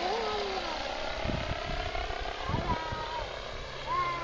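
Electric RC helicopter (FunCopter V2) in flight overhead: a steady motor and rotor whine that rises slightly in pitch midway. Two short low rumbles come about a second and two and a half seconds in.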